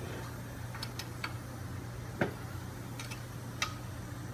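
Four sharp metallic clicks spread over a few seconds, the one in the middle the loudest, as a hand wrench is worked on the housing bolts of a pedestal water pump during the final hand-tightening. A steady low hum runs underneath.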